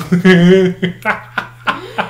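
A person laughing: one long, loud burst, then several short bursts.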